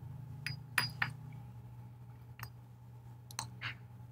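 Glassware clinking: a thin glass stick or pipette knocks against a small glass Erlenmeyer flask in about six light, sharp clinks. The loudest two come close together about a second in, with a few more near the end.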